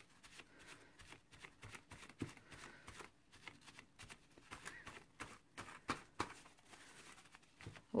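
Paper towel rustling and dabbing against card, blotting off black spray ink that has beaded up on a wax resist. It is a faint, irregular run of crinkles and light taps.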